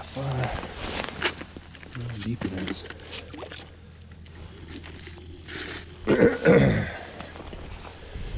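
Boots crunching on snow-covered lake ice as someone walks, mixed with brief indistinct voices. The loudest voice comes about six seconds in.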